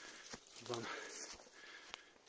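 A man's voice saying a single word, with a few faint footsteps about a second apart as he walks on a grassy path.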